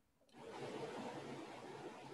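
Faint steady hiss of room noise through a video-call microphone. It cuts in after a brief moment of dead silence at the start, as the call's audio gate reopens.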